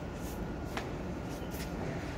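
Steady low background rumble with a few short, soft clicks or scuffs.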